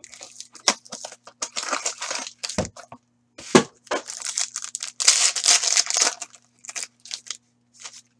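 Cardboard trading card box torn open and the foil pack wrapper inside ripped and crinkled: a run of short tearing and crackling noises, loudest about five seconds in.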